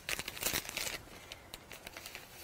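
Crinkling and rustling of a wipe being handled as paint is wiped off the hands, busiest in the first second and softer after.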